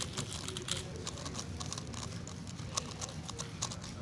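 A megaminx, the JP Galaxy Megaminx V2 M, being turned at speed during a solve: a fast, irregular stream of plastic clicks and clacks as its faces snap round, over a steady low background hum.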